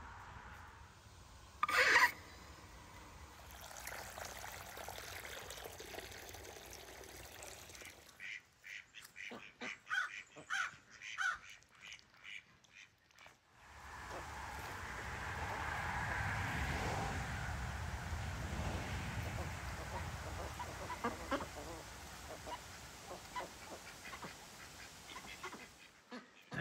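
Domestic mallard ducks quacking: one loud call about two seconds in, then a run of short, irregular quacks, with soft clicking and splashing from their bills dabbling in water and wet ground.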